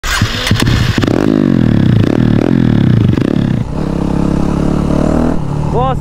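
Motorcycle engine revved up and down about four times, then running steadily at a low, even speed. A few sharp glitchy clicks come in the first second.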